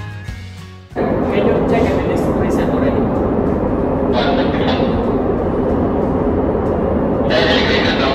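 Background music cuts off about a second in, giving way to a loud, steady rumbling noise with a man speaking into a handheld radio over it.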